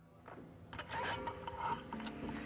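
Mechanical clicking and rattling that swells in from silence, with faint steady tones underneath.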